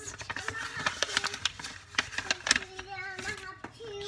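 Paper and envelope rustling and crinkling as the contents of an opened envelope are pulled out and handled, in a run of irregular sharp crackles. A short low hum from a voice comes in near the end.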